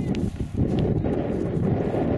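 Wind buffeting the microphone: a steady, heavy low rumble, with one faint click about a quarter of a second in.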